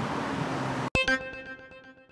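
Steady street traffic noise that cuts off a little under a second in, replaced by a sharp hit and a ringing musical chord that fades away.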